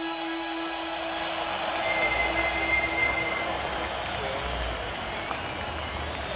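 Sound-effects interlude in a rock track: railway-station ambience with a low train rumble, crowd murmur and a high wheel squeal lasting about a second and a half, under a fading sustained chord.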